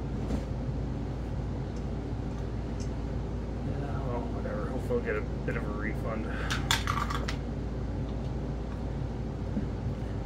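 Small metal clicks and clinks of hand tools and parts on a partly dismantled chainsaw, a short cluster of them a little after the middle, over a steady low hum.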